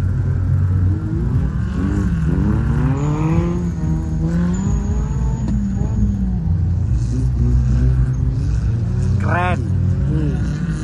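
Off-road 4x4 engine revving, its pitch rising and falling several times over a steady low rumble, with a short high rise and fall near the end.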